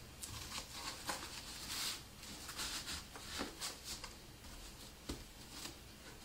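Faint rustling of disposable diapers and a cardboard paper towel tube being handled as the tube is slid through a rolled diaper wheel, with a few light knocks.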